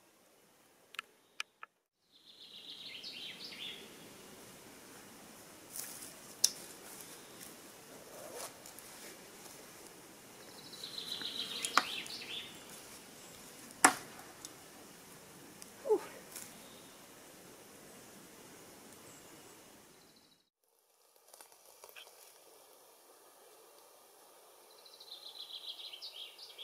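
Faint outdoor ambience with a small bird singing short, high chirping phrases three times. There are a few sharp clicks and knocks among them.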